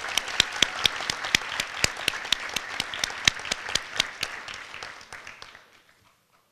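An audience applauding, with a few loud, close hand claps standing out from the general clapping. The applause dies away about five and a half seconds in.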